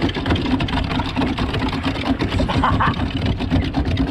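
Hand water pumps worked fast, water gushing and splashing down the troughs of a duck-race game, with many quick clacks and splashes over a steady low hum.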